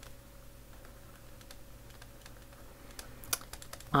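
Faint, scattered clicks and taps of a stylus on a touchscreen while a word is handwritten, coming more often near the end, over a faint steady hum.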